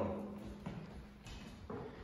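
The ringing tail of a drum struck with a drumstick fades out over the first half second. A few faint, short taps follow.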